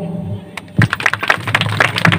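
A small group of people clapping their hands, a dense run of sharp claps starting about a second in.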